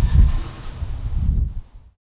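Low, irregular rumble of wind buffeting the microphone, fading away to silence near the end.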